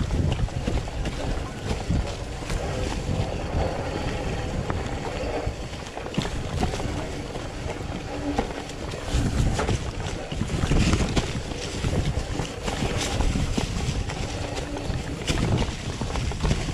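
Mountain bike riding down a dry, leaf-covered dirt singletrack: wind rumbling on the handlebar camera's microphone, tyres rolling over dirt and dry leaves, and the bike rattling and knocking over bumps.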